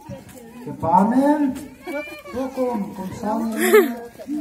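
Several people's voices talking and calling out close by, some held and drawn out with rising-and-falling pitch, loudest about a second in and again near the end.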